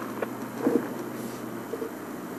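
Safari game-drive vehicle's engine running as it drives slowly, a steady low hum, with a couple of short faint blips in the first second.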